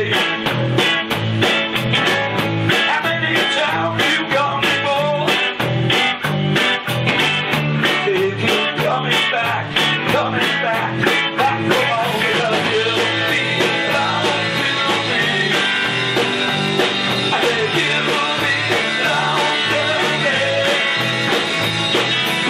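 Live power-pop rock band playing: electric guitars, bass and drums with a steady beat, the sound growing denser about halfway through.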